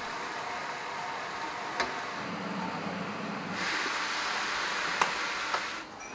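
Chicken pieces sizzling in a hot wok on a gas burner, stirred with a spatula that clicks against the metal a couple of times. The sizzle grows louder and denser about halfway through.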